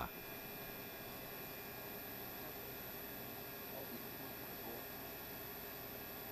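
Faint steady hum and hiss of room tone, with no distinct events.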